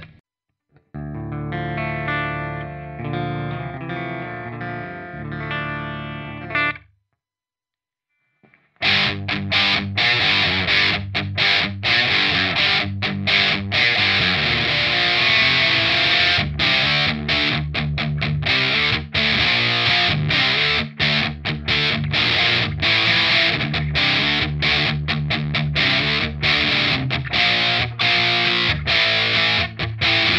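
Electric guitar, an Ibanez RGA121 with DiMarzio D-Activator X pickups, played through the EMMA PisdiYAUwot high-gain distortion pedal into a Line 6 Spider Valve MKII amp: a short phrase of ringing notes for about six seconds, a pause of nearly two seconds, then heavy distorted metal riffing, choppy with many abrupt stops.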